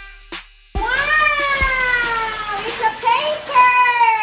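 A drawn-out, voice-like wail sliding slowly down in pitch, which cuts in suddenly about a second in and stops abruptly just after the end.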